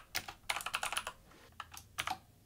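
Typing on a computer keyboard: a quick run of keystrokes through the first second, a short pause, then a few more keystrokes near the end.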